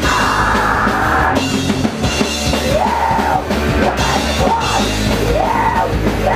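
Hardcore punk band playing live and loud on drum kit and electric guitars.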